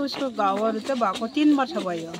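A woman speaking, answering an interview question.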